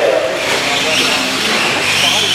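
Radio-controlled race cars running on a dirt track, their motors making a high whine that rises and falls in pitch, with voices talking over it.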